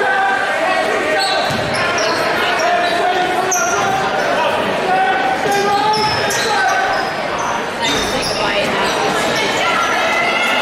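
Basketball game in a large echoing gym: a ball being dribbled on the hardwood floor, short high sneaker squeaks, and the crowd talking and calling out throughout.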